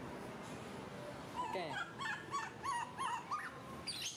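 An animal's high-pitched cries: a run of about seven short calls, each gliding up and down, over a steady background hum.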